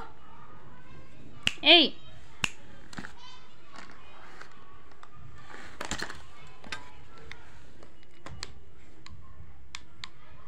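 Scattered small sharp clicks and taps, about one a second, from handling a plastic remote-control toy car and its handset. A person's short call 'ए' rises and falls about two seconds in and is the loudest sound.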